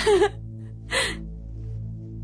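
A woman's short, breathy laugh in two bursts, the louder at the start and a second about a second later, over soft, steady background music.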